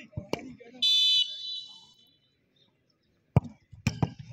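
A referee's whistle blown once in a short, loud blast to signal a penalty kick, then, a couple of seconds later, the thud of the football being kicked, with another knock about half a second after it as the ball reaches the goal.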